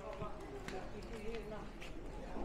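People talking in a market aisle, with footsteps clicking on the stone floor, two of them standing out.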